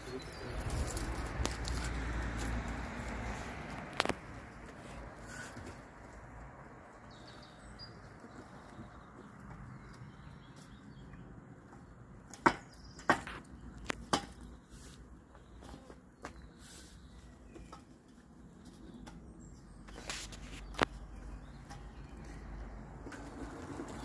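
A long metal pole with a cardboard box on its end being raised and handled outdoors. There is a rushing noise in the first few seconds, then faint background with scattered sharp knocks and taps, most of them between about 12 and 21 seconds in.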